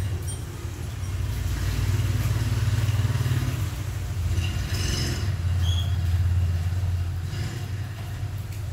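A low engine-like rumble, as from a motor vehicle running, swelling twice: about a second and a half in and again around five and a half seconds in.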